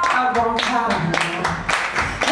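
Audience and performer clapping in time, a steady beat of about three claps a second, with a voice singing over the claps and no guitar.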